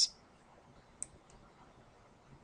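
A single sharp computer mouse click about a second in, followed by a much fainter click, over near-silent room tone.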